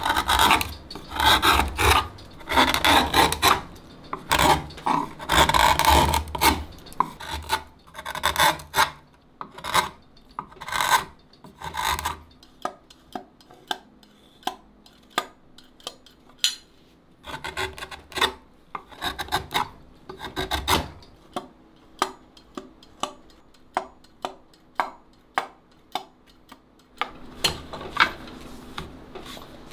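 A hand gouge cutting and scraping the wooden arching of a violin plate, stroke after stroke. For about the first dozen seconds the strokes come dense and loud. After that they are short and separate, about one or two a second.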